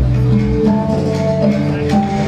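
Live band playing an instrumental tune: steady low bass notes under a melody of held notes, with guitar and light percussion.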